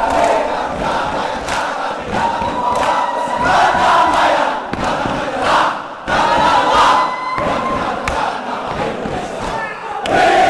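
A large group of voices chanting and shouting in unison, holding long drawn-out calls, punctuated by sharp percussive slaps as in a haka-style war dance.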